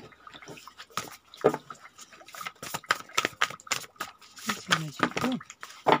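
A deck of oracle cards being shuffled by hand: an irregular run of short, sharp clicks and slaps as the cards rub and knock against one another.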